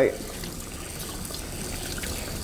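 Handheld shower sprayer running steadily, water pouring over a puppy's coat into the bath.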